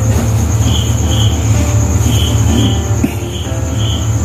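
Insects chirping, with pairs of short high chirps repeating about every second and a half over a steady high trill, above a loud steady low hum.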